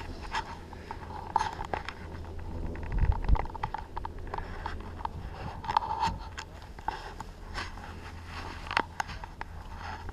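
Scattered clicks, knocks and scraping from a handheld camera being moved about inside an enclosed bubble chairlift seat, with a low thump about three seconds in. A steady low hum from the moving lift runs underneath.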